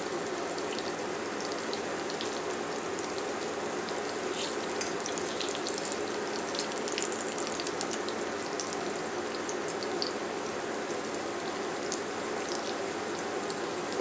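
Ripe plantain slices frying in melted margarine in a stainless steel pan. A steady sizzle with scattered small crackles as the slices are turned over with a spatula and fork.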